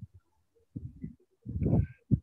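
A woman's hesitant voice in mid-question: two short, low, creaky 'uh' sounds, the second one louder.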